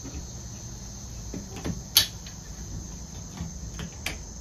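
Clicks and light rattling as a phone holder is taken off and turned around on a tripod head, with one sharp click about halfway through. A steady, high insect trill runs underneath.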